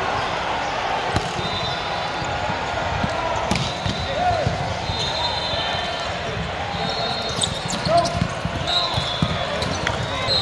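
Volleyball rally in a busy, echoing sports hall: volleyballs struck and bouncing, with short squeaks of athletic shoes on the court, over a steady wash of crowd voices.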